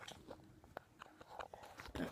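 Faint scattered clicks and soft rubbing of a baby handling and mouthing the phone that is recording.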